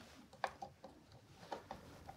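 Faint clicks of wire strippers closing on a copper conductor and pulling its insulation off, with a sharper tick about half a second in and another about a second later.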